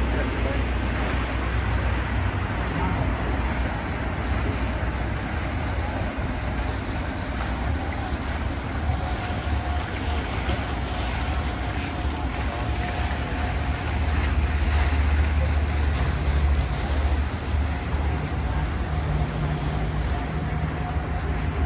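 Motorboats running on the canal below, a steady engine drone and wake wash, with wind rumbling on the microphone and indistinct voices. A faint steady engine tone comes in about halfway through.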